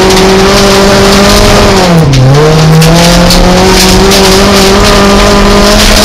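Folkrace car's engine running hard at high revs, heard loud from inside the stripped cabin. The revs dip sharply and pick up again about two seconds in, then climb slowly.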